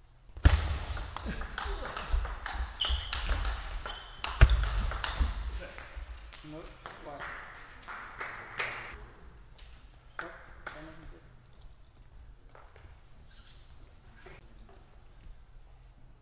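A player's loud wordless shouts in the first few seconds, then the sharp clicks of a table tennis ball being hit and bouncing on the table, with a brief shoe squeak near the end.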